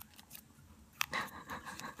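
Folded origami paper crinkling and rustling as a paper unit's tab is forced into a slot of a Sonobe cube, with a sharp crackle about a second in.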